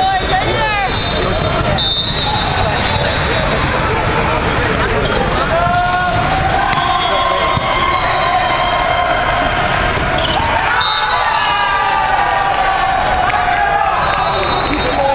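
Indoor volleyball play in a large hall: ball hits and sneakers squeaking on the sport court over a steady din of voices from players and spectators. The squeaks and shouts come in clusters at the start, in the middle and again near the end.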